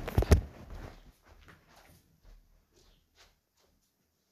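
Two sharp knocks close together, then faint scattered taps and rustling that die away.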